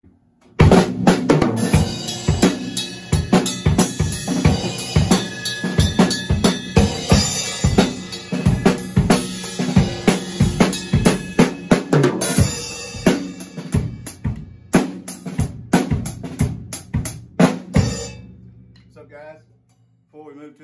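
Acoustic drum kit played in a busy, continuous run of strokes on snare, bass drum and cymbals, stopping about eighteen seconds in and ringing out.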